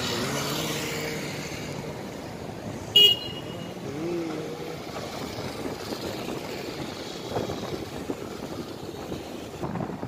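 Street traffic: a motorcycle engine passes close by, then a short, sharp horn beep about three seconds in is the loudest sound. More motorcycles and a car go by after it.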